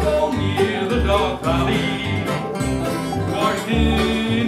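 Live acoustic bluegrass band playing: banjo, mandolin, acoustic guitar and resonator guitar over an upright bass pulsing about twice a second.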